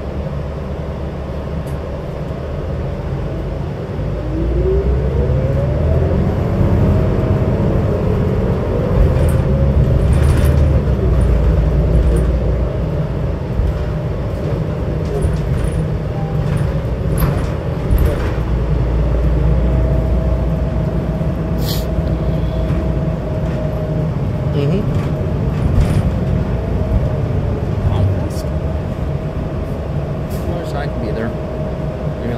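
Cabin sound of a New Flyer XD60 diesel articulated bus under way: a low engine rumble, with a whine that rises in pitch about four seconds in as the bus gets louder and speeds up, then holds a steady drone. Occasional sharp rattles and clicks from the body.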